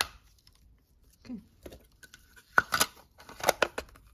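Sharp plastic clicks and snaps from a small battery-powered desk vacuum being handled as its batteries go in and its battery cover and housing are fitted back together, with a cluster of clicks in the second half.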